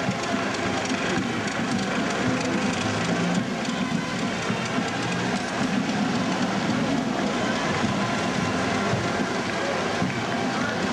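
Busy street-parade noise: a steady patter like a crowd clapping, mixed with music-like held notes and the engines of vintage military jeeps and a Land Rover driving slowly past.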